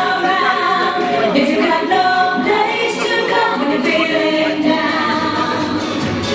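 Several voices singing sustained notes in close multi-part harmony, with little instrumental backing.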